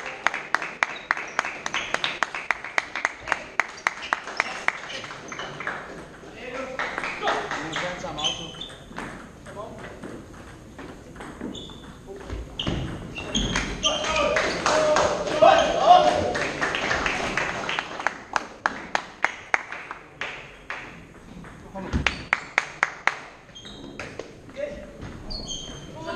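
Table tennis balls clicking off tables and bats in quick, even runs of about three a second, echoing in a large sports hall, with people talking in the background.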